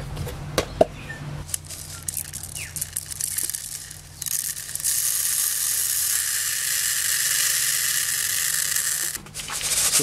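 Cauliflower seed being winnowed by pouring it from one plastic tub into another: scattered light ticks of seeds dropping onto plastic, then a steady hiss of the seed streaming into the tub for about four seconds in the second half, which stops suddenly.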